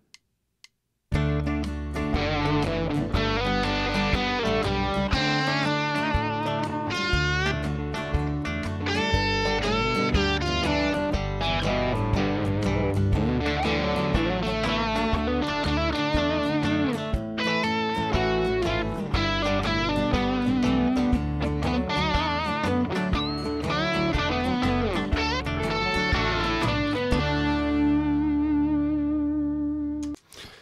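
Band-in-a-Box RealTracks band arrangement at about 120 bpm playing back: bass, drums and rhythm guitars, with an electric guitar solo over them. It starts about a second in and ends on a held chord that rings out near the end.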